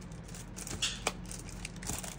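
Plastic die-set packaging rustling, with a few light clicks as the die sheet is pulled partly out of its sleeve; the loudest handling sounds come about a second in.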